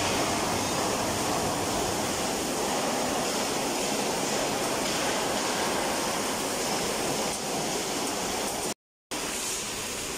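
Steady, even hiss of factory floor noise around an automatic MIG butt-welding line for container panels, the welding arc running on the panel seam. The sound cuts to silence for a moment about nine seconds in.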